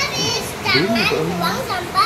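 A young child's high-pitched voice, talking or babbling without clear words.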